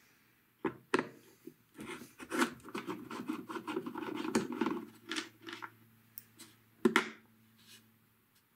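Screwdriver backing a screw out of a rubber foot on the bottom panel of an 8-track deck's cabinet: a couple of clicks, then several seconds of scratchy grinding as the screw turns, and one sharp click near the end.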